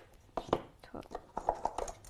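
A few faint, sharp clicks of Go stones being set on a magnetic demonstration board.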